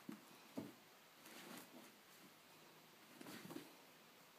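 Faint soft thumps and scuffling of a cat's paws on carpet and against a fabric sheet as it pounces and scrambles: a couple of thuds at the start, a scuffle about a second and a half in, and another cluster near the end.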